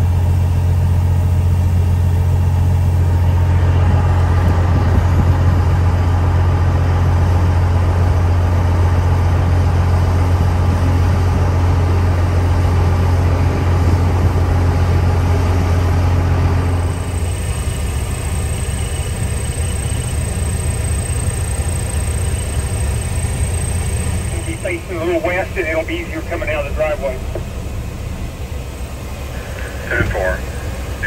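A truck engine running steadily, heard from inside the cab as a loud low drone. About halfway through the sound changes abruptly to a quieter engine noise with a faint high whine, and a few voice-like sounds come near the end.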